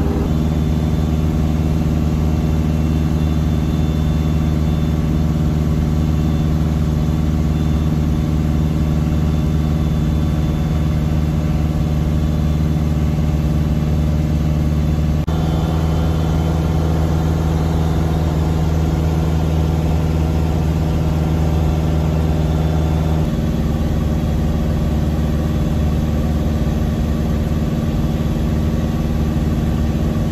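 Piper Super Cub's piston engine and propeller heard inside the cockpit in cruise flight, a steady drone. Its pitch shifts slightly about halfway through and again about two-thirds through.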